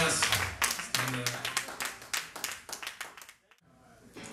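Audience clapping after a live rock song, with a short voice about a second in; the clapping thins and fades away to silence shortly before the end.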